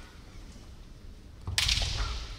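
A sharp crack of a bamboo shinai striking kendo armour about one and a half seconds in, with a heavy stamping step on the wooden gym floor.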